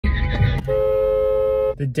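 Car horn sounding one steady two-tone blast lasting about a second.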